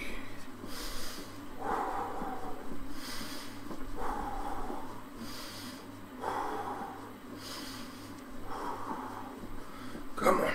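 Heavy, rhythmic breathing of a man pedalling hard on an exercise bike, a breath in or out about every second, over a steady low hum.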